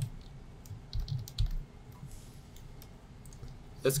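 A few computer keyboard keystrokes, one at the start and a quick cluster of three about a second in, followed by quiet room tone.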